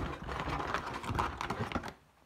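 Plastic vacuum-sealer bags crinkling as they are handled and shifted about in a cardboard box: a dense run of small, irregular crackles that stops just before the end.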